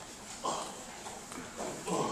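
Two short vocal bursts from people in a hall, about half a second in and again near the end, over a low murmur.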